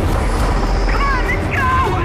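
Dense film soundtrack: a heavy, steady low rumble under the score, with two short shouted calls, about a second in and again just before the end.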